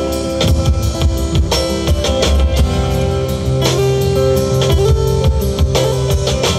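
Live band playing an instrumental passage of a song: acoustic guitar strummed over a drum kit, with held notes ringing above the beat.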